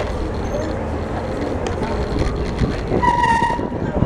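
Low rumble of a bicycle riding along a pier walkway with wind on the microphone, with pedestrians' voices around it. About three seconds in, a short steady high tone sounds for about half a second.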